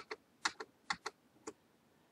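Computer keyboard keys being pressed: a run of sharp clicks, roughly in pairs about half a second apart, that stops about a second and a half in. This is the Ctrl+Z undo being keyed repeatedly.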